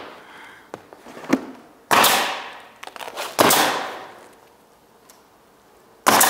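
Pneumatic roofing nailer firing twice, about a second and a half apart, driving nails through an asphalt shingle. Each shot is a sharp crack with a hiss trailing off over about a second, and a few lighter clicks and taps come before the shots.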